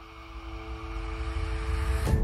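Intro sound effect: a rising whoosh swelling steadily louder over two held tones, building to a sudden hit at the end.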